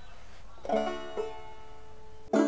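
Banjo: a chord plucked about two-thirds of a second in and a second pluck about half a second later, both left ringing and slowly fading.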